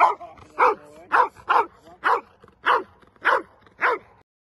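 Belgian Malinois barking repeatedly, about two barks a second, eight barks in all, with a short whine about half a second in.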